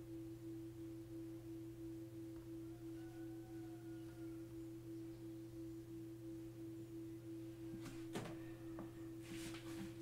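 Faint steady electronic tone from the iPhone during the Personalized Spatial Audio head-scan, pulsing lightly about four times a second, over a low steady hum. A light knock about eight seconds in.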